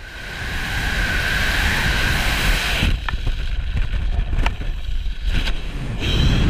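Wind rushing over the camera microphone while descending under a parachute, with a thin steady whistle for the first three seconds, then quieter and gustier with a few faint clicks.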